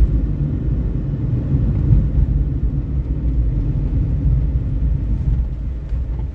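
Steady low rumble of a vehicle driving along a street, engine and road noise heard from on board.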